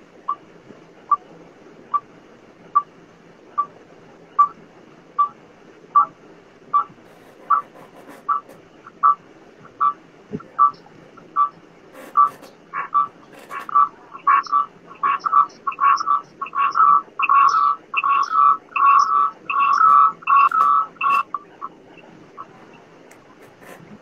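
A series of short, high-pitched pips, evenly spaced at first about one a second, then coming faster and faster until they run almost together, and stopping shortly before the end.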